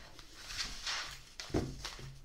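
Oracle cards being slid together and gathered off a cloth mat by hand: a brushing rustle, with a light knock about one and a half seconds in.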